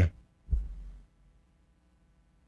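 A single low thump on the close microphone about half a second in, dying away within about half a second, followed by near silence with a faint low hum.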